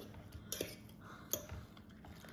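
A metal fork clicking lightly against dishes, about three faint clicks, as beaten egg mixture is poured from a bowl into a slow-cooker crock.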